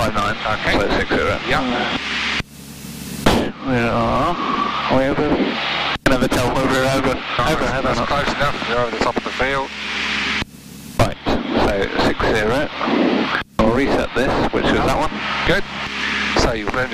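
Voices over a light aircraft's radio and intercom audio, broken by two short bursts of radio hiss, about two and a half seconds in and again about ten and a half seconds in, with the aircraft's engine droning steadily underneath.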